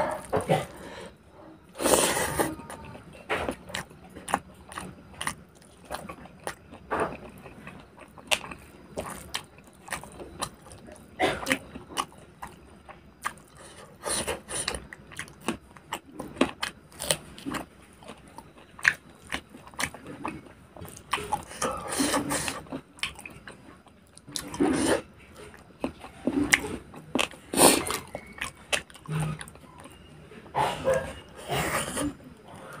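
Close-miked eating sounds of a person chewing pork fry and rice: a steady run of irregular wet mouth clicks and smacks, with louder clusters now and then.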